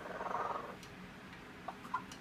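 Yellow-naped Amazon parrot giving a rough, purr-like grumble for under a second while it bathes, then two short calls near the end.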